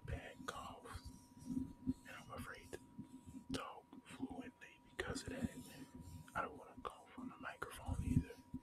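Close-up, unintelligible whispering into the microphone, mixed with soft scratchy rubbing from a cotton swab. A thin, steady high tone of background noise runs underneath.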